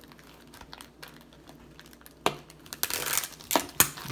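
Plastic shrink wrap on a cardboard booster box being slit with a knife and pulled open: quiet at first, a sharp click a little past halfway, then about a second of crinkling near the end.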